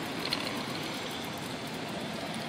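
Steady outdoor background noise, with a faint click about a third of a second in.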